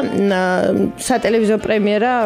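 A person talking over background music.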